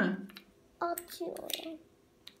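Brief voice sounds with a few light clicks of small plastic game pieces being handled.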